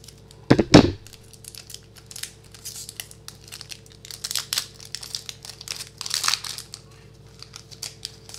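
Scissors cutting into a hockey card pack's wrapper, loudest about half a second in, then the wrapper crinkling and tearing as fingers pull it open.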